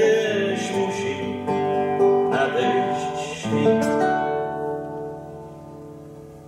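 Nylon-string classical guitar played fingerstyle, notes and chords ringing out, fading away over the last couple of seconds.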